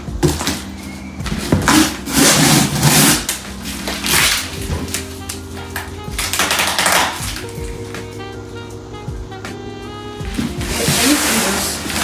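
Background music with held notes, over which come several short bursts of scraping and rustling as a large cardboard box is handled and its plastic strapping and tape are cut with scissors.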